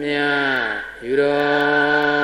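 Buddhist chanting, the syllables held long, about a second each, with short breaks between.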